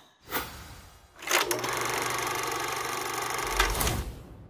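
Animated logo sting sound effects: a short sound just after the start, then from about a second in a fast, even, machine-like buzzing for about two and a half seconds, ending in a low hit.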